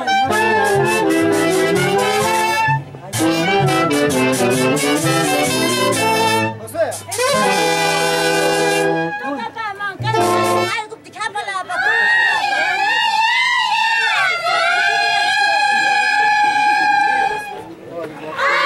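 A brass band playing a tune with held chords. In the second half it gives way to high-pitched singing that wavers and slides.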